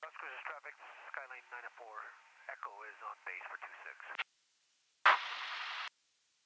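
A voice over an aircraft radio, thin and narrow-band, for about four seconds, then after a short pause a burst of radio static lasting about a second that starts with a sharp crackle and cuts off suddenly.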